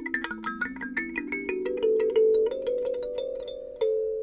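A box kalimba (thumb piano) plucked in a quick run of notes. Each note starts with a sharp click of the metal tine and then rings on, so the notes overlap.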